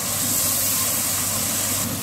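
Onions with ginger-garlic paste frying in oil in a nonstick wok, a steady sizzling hiss as they are stirred, over a steady low hum.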